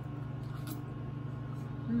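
Steady low electrical hum of a microwave oven running while it heats cauliflower, with faint chewing.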